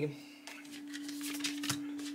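Tarot cards being handled: soft, irregular papery clicks and rustles as cards are drawn from the deck and laid on the table, over a steady low electrical hum.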